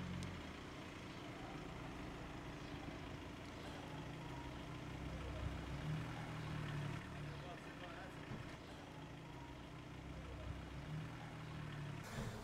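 A car engine running at low speed, a faint, steady low hum, with light street background noise.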